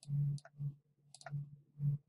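Computer mouse clicking: about five small, separate clicks over two seconds as spreadsheet column borders are grabbed and dragged.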